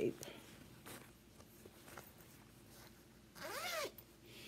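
Zipper on a fabric project bag pulled in one quick stroke about three and a half seconds in, its buzz rising and then falling in pitch. Faint handling of the bag before it.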